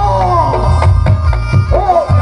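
Reog Ponorogo gamelan accompaniment: a slompret, a reedy shawm, playing a wailing melody with pitch bends near the start and near the end, over steady drum and gong beats.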